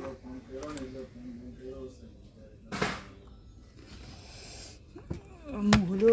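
Indistinct voices in a small room, with a sharp knock about three seconds in and a couple of clicks near the end, as a voice grows louder.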